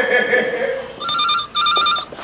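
Desk telephone ringing with a trilling electronic ring, two short bursts in the second half.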